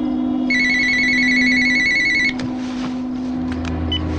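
Telephone ringing with a rapid electronic warble: one ring starts about half a second in and stops just after two seconds. A few faint clicks follow, over a low steady tone.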